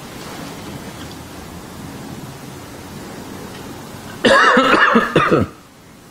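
Low steady room hiss from the lecturer's microphone, then about four seconds in a short loud wordless vocal sound from the man, lasting just over a second.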